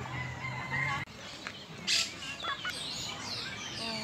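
Small birds chirping and twittering, many short rising and falling calls overlapping, with a louder call about two seconds in. A faint low hum sits under the first second and then stops abruptly.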